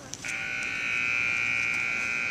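A steady, high electronic buzzer tone that switches on abruptly about a quarter second in and holds one unchanging pitch.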